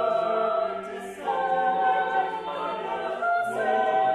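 An eight-voice vocal ensemble of two sopranos, two altos, two tenors and two basses, singing unaccompanied contemporary choral music in long held chords. The voices move to a new chord after a brief break about a second in, and again near the end.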